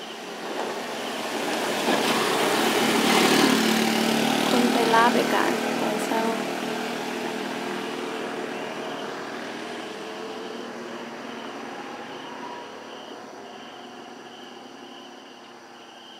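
A motor vehicle passes close by: its engine and road noise build over about three seconds and then fade away slowly. Insects chirp steadily behind it.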